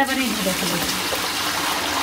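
Hot water poured in a steady stream from a large metal pot into a plastic bucket.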